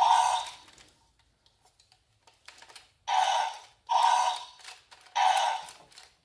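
Button-driven arm mechanism of a Mattel Slash 'N Battle Scorpios rex toy, plastic gears and arms clicking as the button on its back is pressed: four short bursts, each under a second, the first near the start and the others about 3, 4 and 5 seconds in.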